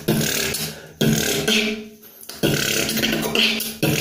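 Vocal beatboxing freestyle: mouth-made percussive sounds over a steady low hum, in phrases broken by brief pauses about one and two seconds in.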